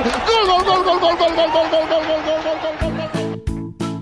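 A long, drawn-out held voice that slowly sinks in pitch, with other voices under it. About three seconds in it cuts to a keyboard tune of short, evenly spaced notes.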